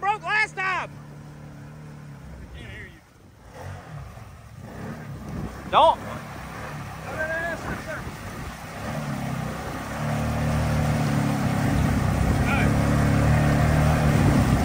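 Side-by-side UTV engine pulling under load as the machine pushes forward through a deep mud hole. It is faint at first, swells from about four seconds in, and runs loud and steady over the last few seconds.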